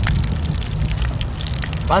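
Wood fire crackling in a mini wood-burning stove, with faint sharp ticks over a steady low rumble of wind on the microphone.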